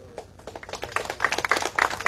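A group of people clapping, starting faintly about half a second in and growing denser and louder.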